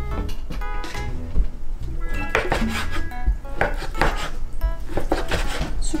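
Kitchen knife slicing leftover grilled meat on a plastic cutting board, the blade knocking on the board in a series of irregular cuts, with handling of the meat and container.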